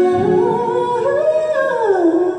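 A solo singer's wordless, unaccompanied phrase through a microphone: the voice holds a note, climbs higher, then slides back down.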